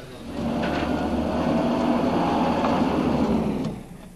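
A car's engine running as the car drives slowly up to the camera and stops, the sound cutting off abruptly a little before the end.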